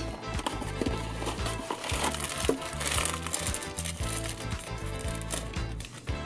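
Background music with a steady bass line, over a string of small clicks and crinkles from a Funko Mystery Minis cardboard blind box being opened and its bag torn open by hand.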